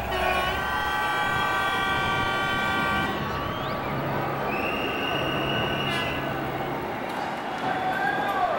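A horn blowing one long held blast of about three seconds, then a higher, thinner tone about a second and a half long, over the steady noise of a large street crowd.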